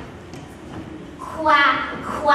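Quiet hall tone, then about a second and a half in a loud, high-pitched voice cries out, rising in pitch.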